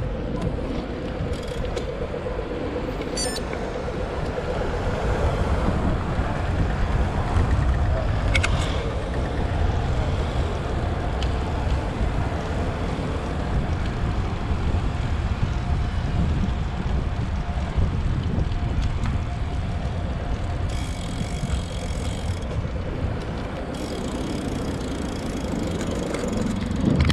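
Wind rushing over a bike-mounted camera's microphone while cycling, with city road traffic running alongside.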